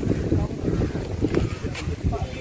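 Wind buffeting the camera microphone, an uneven gusting low rumble.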